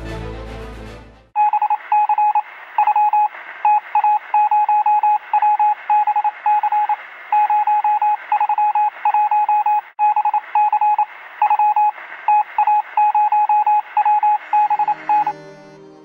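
Morse-code-style beeping: a single high tone keyed on and off in quick, irregular short and long beeps over a steady hiss, thin like a radio signal. Music fades out just before it starts, and the beeping stops about a second before the end.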